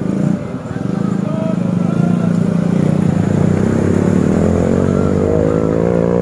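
Toyota Kijang Innova's engine pulling up a steep incline under load, getting louder as the car approaches, its pitch rising near the end.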